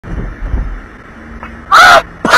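A man's short, very loud yell near the end, over the low rumble of a moving car's cabin.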